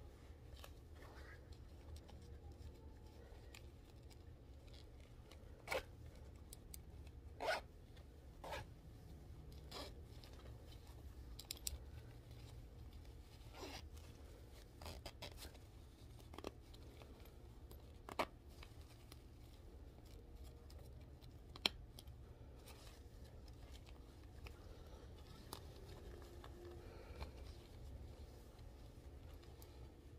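Faint short rasps and clicks of a zipper, pulled in short stretches every second or two, as a hairpiece is zipped into the band of a knit beanie.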